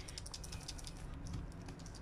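Plastic pump bottle of water and detergent powder being shaken by hand to mix it, giving faint, quick, irregular ticks and rattles.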